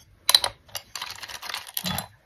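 Seashells clicking and clattering against one another in a bowl as hands rummage through them: one sharp clack about a third of a second in, then a run of rapid small clicks.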